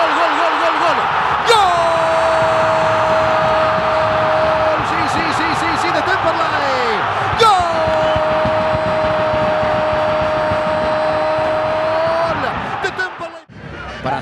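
Football commentator's drawn-out goal cry, "gooool", held on one steady pitch for about three seconds, then a second held cry of about five seconds, marking a goal. Dense stadium crowd noise runs underneath.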